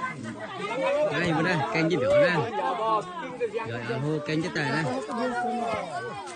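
Several people talking over one another in lively, overlapping chatter.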